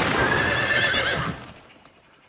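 A horse whinnying, a loud wavering call that fades out about a second and a half in.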